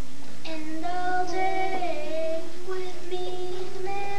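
Children singing held notes that slide in pitch, beginning about half a second in.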